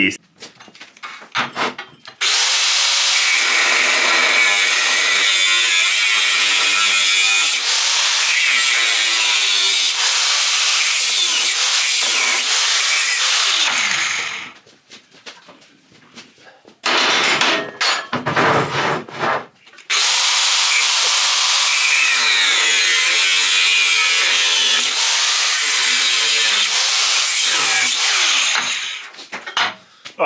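Angle grinder cutting through the steel tubing of a motorcycle frame, running loud and steady in two long cuts of about ten seconds each, with a break near the middle.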